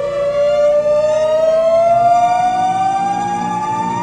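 A single electronic synthesizer note gliding slowly and steadily upward in pitch, like a siren, over soft musical accompaniment.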